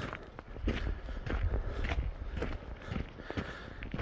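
Footsteps of a hiker climbing slowly on a rocky dirt trail, boots crunching on gravel and loose stones at an uneven pace.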